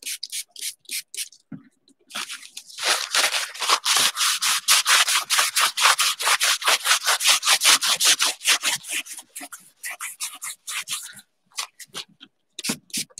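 A cloth rubbed briskly back and forth over a painted canvas panel, rubbing back the water-soluble colour. A few scattered strokes come first, then from about two seconds in a fast, even rubbing of about five strokes a second that thins out near the end.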